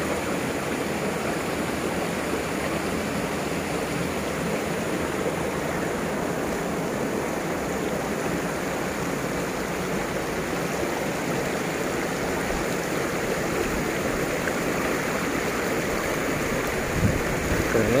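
Steady rush of water running over rocks in a shallow stream.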